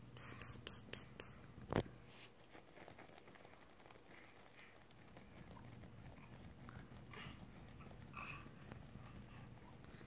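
Four quick hissed 'tss' sounds from a person's mouth, about four a second, in the first second or so, then a single soft knock. After that only faint, quiet small sounds.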